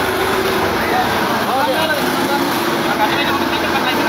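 A vehicle engine running with a steady hum, under people talking.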